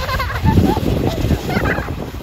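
A young child's high-pitched, wavering vocal cries in a few short bursts, over a low rumbling noise.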